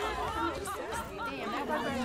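Several voices talking and exclaiming over one another at once, a tangle of overlapping chatter.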